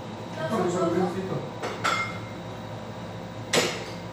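Tableware handled during a meal: two small clicks early on, then one sharp clack near the end, the loudest sound here. Brief low talk comes before them.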